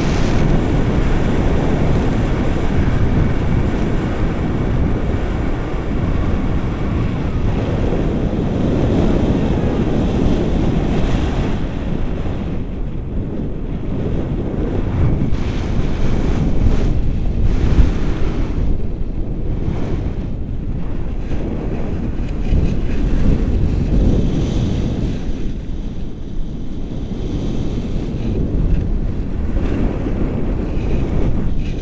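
Airflow of a paraglider in flight buffeting the camera's microphone: loud, uneven low wind noise that keeps swelling and easing.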